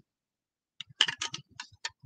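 A spoon clicking against the side of a clear cup of water as it stirs in food colouring. There is a quick run of light clicks starting just under a second in.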